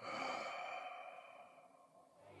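A man's long sigh, starting suddenly and fading away over about two seconds.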